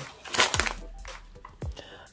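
A plastic food pouch crinkling as it is handled and set down, followed by a light knock.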